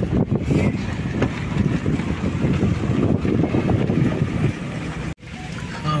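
Wind buffeting the microphone and road rumble from a moving car, a dense, uneven rush. It breaks off abruptly about five seconds in and goes on more quietly.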